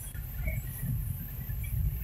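Low, steady rumble of a moving car's engine and tyres, heard from inside the cabin.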